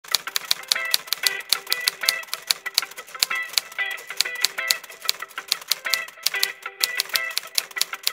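Intro jingle of rapid typewriter key clicks over a short repeating melodic figure. The clicks run several to the second, irregularly, as in typing.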